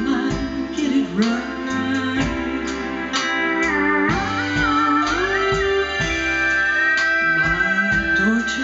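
Live country band playing an instrumental break: a steel guitar takes the lead with sliding notes, then a long held note that bends slowly upward near the end, over drums, bass and keyboard.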